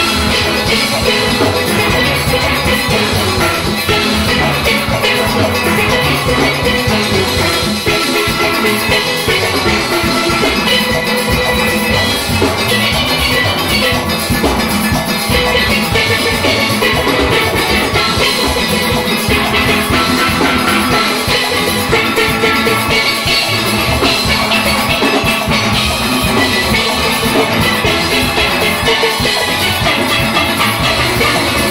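A full steel orchestra playing: many steel pans ringing out a fast melody and chords over a driving drum and percussion rhythm.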